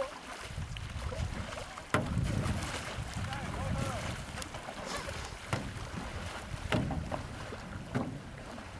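Canoe paddles dipping and pulling through the water during a race, under steady wind rumble on the microphone, with a few sharp knocks of paddle against hull.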